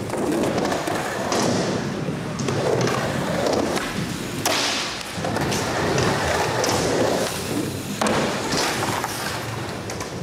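Skateboard wheels rolling on wooden ramps, with the hard clacks and thuds of board impacts and landings, the sharpest about four and a half seconds in and again near eight seconds.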